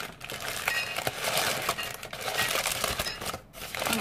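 A shopping bag being handled and opened, crinkling and rustling steadily for about three seconds, with a short lull near the end.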